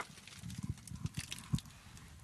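A run of soft, irregular knocks and low thumps, about a dozen in two seconds, in a trench firing position.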